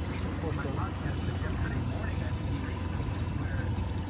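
Honda 115 four-stroke outboard motor running steadily at low speed, with water washing along the hull. The motor sounds smooth: it was freshly tuned.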